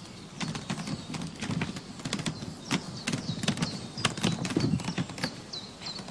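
Irregular knocks and clatter of wooden beehive supers being handled as they are strapped together and loaded onto a trailer. Small birds chirp repeatedly in the second half.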